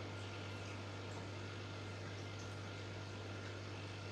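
A steady low hum with a faint hiss behind it, unchanging throughout.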